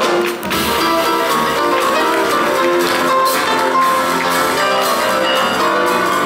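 Two grand pianos playing a fast boogie-woogie duet, with a drum kit accompanying.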